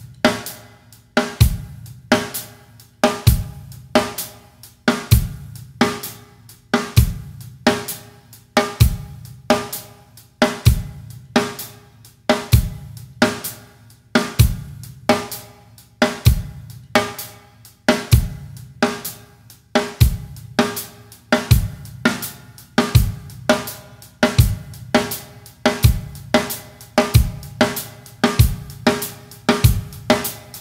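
Yamaha acoustic drum kit playing a slow Indian Kherwa groove: steady eighth notes on the hi-hat with accented downbeats, snare strokes off the beat, and bass drum on beats one and three. The tempo picks up in the last third.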